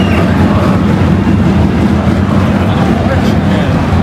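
Loud, continuous noise of a football stadium crowd heard from within the stands, with a heavy low rumble underneath.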